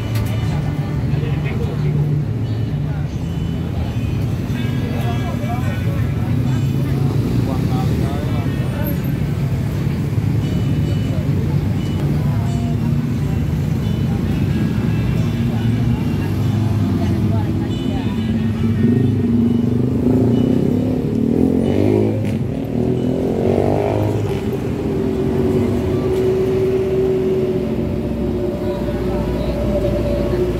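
Busy outdoor market ambience: background voices and motor traffic. A little after twenty seconds in, a vehicle engine rises in pitch, then holds a steady drone to the end.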